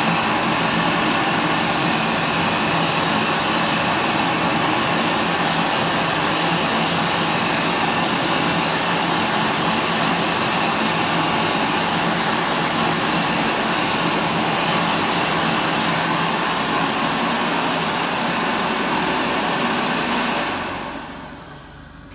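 A JD MacDonald Autobeam hand dryer blowing air with a hand held under its nozzle: a steady loud rush with a low hum under it, which winds down and fades out near the end.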